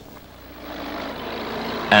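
Heavy earthmoving machine's engine running, rising in level over the first second and then holding steady.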